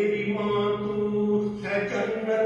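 A man's voice singing a Punjabi poem in a slow, chanting style, holding long steady notes, moving to a new note about a second and a half in.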